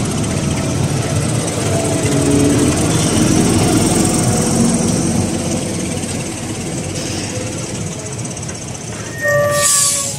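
A large tractor's diesel engine working under load as it hauls a loaded silage trailer past close by, with the heavy rumble and rattle of the trailer on its tandem axles. Near the end, a brief louder burst with a high whine.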